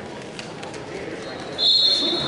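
Gym crowd murmur, then about one and a half seconds in a referee's whistle blows a loud, steady high note to start the wrestlers from the neutral position.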